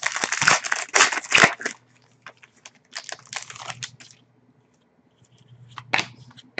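Foil trading-card pack being torn open, its wrapper crinkling and crackling in dense bursts for the first two seconds. Softer crinkling follows about three seconds in, with a few light clicks near the end.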